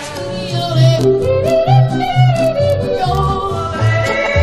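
Yodeling over an instrumental accompaniment: the voice leaps between chest and high notes over a bouncing bass line of about two notes a second. Just before the end it gives way to a different recording.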